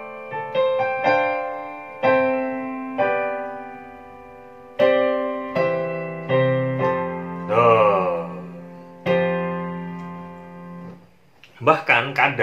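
Piano playing a slow chord progression voiced with suspended (sus) chords. The chords are struck one after another and left to ring, with a quick rippling run of notes about two thirds of the way through. The last chord fades out shortly before the end.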